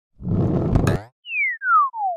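Cartoon-style sound effects: a short noisy whoosh lasting under a second, then, after a brief gap, a single clean whistle sliding steadily downward in pitch, swelling three times as it falls.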